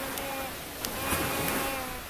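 A toddler's small hands clapping a few soft times, over a faint steady hum.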